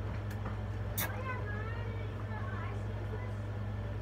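A steady low hum with faint voices in the background and a sharp click about a second in.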